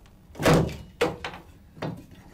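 An axe chopping into old wooden floorboards: three blows a little under a second apart, the first the loudest, splitting the boards.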